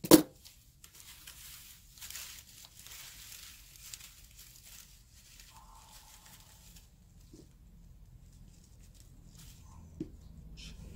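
A single sharp knock right at the start, then soft paper rustling and crinkling as bundles of cut white paper fringe are handled and wrapped around a bamboo pole.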